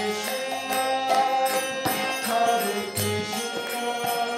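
Devotional kirtan: a male lead voice chants a mantra into a microphone over sustained held instrument tones. A percussive strike falls about two to three times a second.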